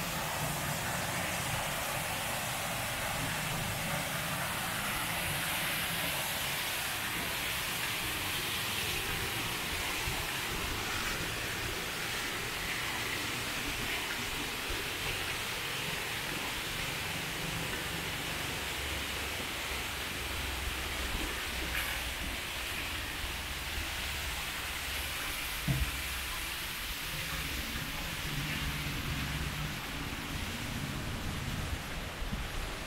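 Fountain water jets falling and splashing into a pool, a steady hiss of running water, with a faint low rumble underneath and one brief knock near the end.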